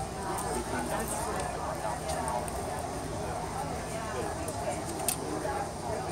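Indistinct chatter of voices from people around an outdoor stall, running on steadily, with a few light ticks, the clearest about five seconds in.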